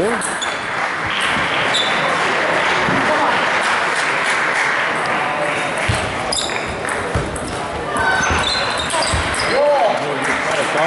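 Celluloid-type table tennis ball clicking off bats and the table in a rally, a quick run of sharp ticks in the second half, over steady background chatter in a sports hall.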